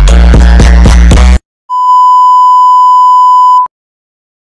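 Background music with a heavy beat cuts off about a second and a half in; then a single loud, steady electronic beep sounds for about two seconds and stops abruptly.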